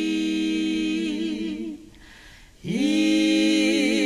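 A trio of two women and a man singing a cappella, without accompaniment. They hold a long note, pause briefly for breath a little before halfway, then come in on a new note that slides up into place and is held.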